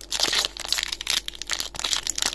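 Foil wrapper of a Pokémon booster pack crinkling close to the microphone as it is handled and torn open by hand: a dense, rapid crackle.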